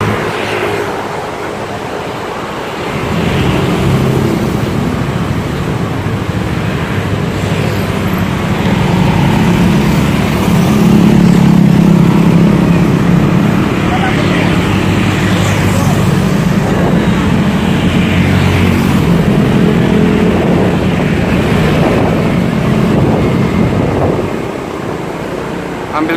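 Motorcycle engine running under way in slow city traffic, with the noise of surrounding cars and road. It swells loudest about ten to thirteen seconds in.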